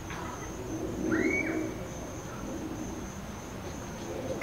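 A bird calls once, briefly, about a second in. Under it runs a steady high-pitched drone of insects.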